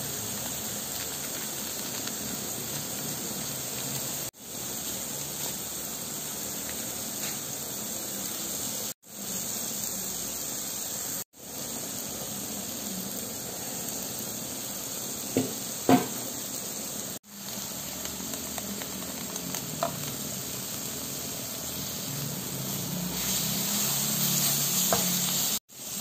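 Red oncom sizzling as it fries in a nonstick wok and is stirred with a wooden spatula, the spoonful of added water cooking off as the oncom starts to dry. The steady sizzle breaks off briefly a few times, and a few light knocks come around the middle.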